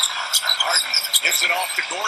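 NBA game broadcast audio playing in the background: a commentator's voice over arena crowd noise, sounding thin with no low end.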